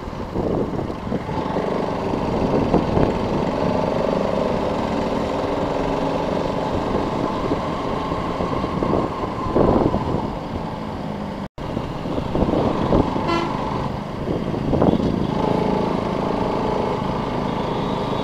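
Motorcycle engine running steadily on the move, with a vehicle horn tooting briefly.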